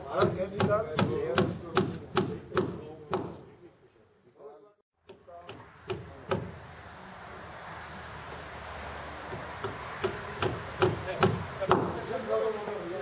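Hammer blows on timber, a quick run of about three strikes a second for the first three seconds, then a few scattered strikes later on, as the topping-out tree is fastened to the roof rafters. Men's voices talk underneath.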